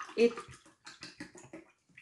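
Birch sap poured from a plastic bottle into a drinking glass, trickling and splashing in short, uneven spurts that stop near the end.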